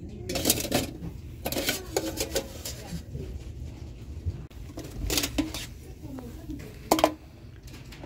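Galvanized tin pails clanking and clinking against each other as they are lifted out of a nested stack: several short metallic knocks with a brief ring, one of the sharpest near the end.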